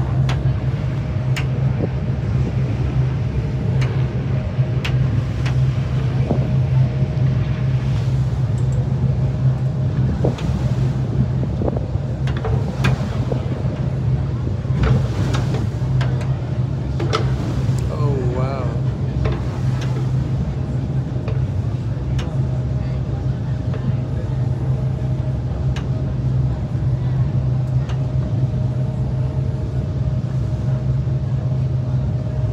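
A boat's engine running with a steady low drone, heard on board while under way, with wind and water noise over it.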